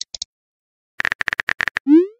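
Texting-app sound effects: a quick run of about eight keyboard-tap clicks, then a short rising whoosh near the end as a message is sent.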